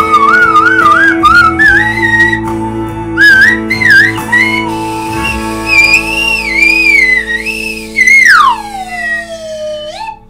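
Plastic slide whistle playing a melody with a wavering vibrato over a recorded band backing track, its pitch climbing in steps through the phrase. Near the end it makes one long downward slide in pitch as the piece closes.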